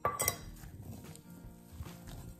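Fresh blueberries tipped from a small stainless steel cup into a glass mixing bowl of dough. It opens with a sharp clink of metal on glass, then softer scattered knocks and thuds as the berries and hands settle into the dough.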